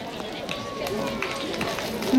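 Low, indistinct voices with a few scattered light knocks, in the lull right after a choir song.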